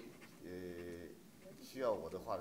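A person's voice, quiet, holding one drawn-out hesitation sound for about half a second, then speech starting again near the end.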